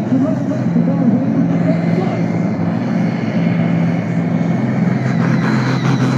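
Pulling tractor's diesel engine running flat out under full load as it drags a weight-transfer sled, a loud steady drone.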